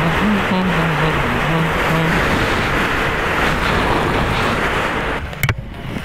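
Motorcycle riding at speed, heard from an onboard camera: a heavy rush of wind and road noise with the engine note under it, stepping up in pitch over the first couple of seconds. A little after five seconds the rush drops away, followed by a couple of sharp clicks.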